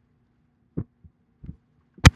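Three short, soft, low thumps within about a second, starting just under a second in, over a faint steady low hum.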